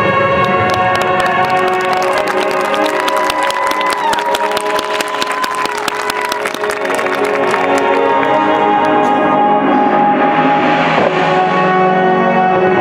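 Marching band playing its field show: held brass and wind chords over front-ensemble percussion, with a dense patter of sharp strikes through the first half and a rushing swell near the end.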